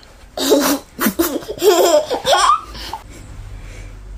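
Laughter in several bursts over the first three seconds, with quick rises in pitch, followed by a faint low hum.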